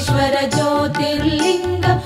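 Instrumental interlude in a Telugu devotional song to Shiva, Carnatic in style: a sustained melodic line over a steady beat of low drum strokes.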